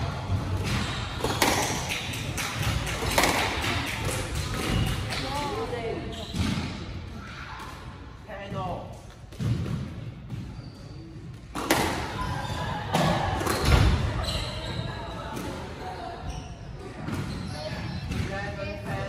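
Squash play: the ball is struck by rackets and knocks against the court walls in a series of sharp, echoing hits. A quieter stretch falls in the middle, and the hits pick up again after about eleven and a half seconds.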